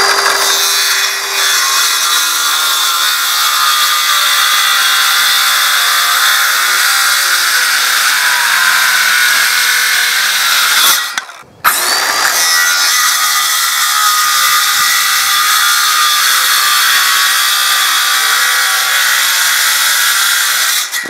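Ryobi cordless circular saw spinning up and cutting through a 19 mm Tasmanian oak board, the motor running steadily under load. The sound stops briefly about eleven seconds in, then the saw spins up and cuts again.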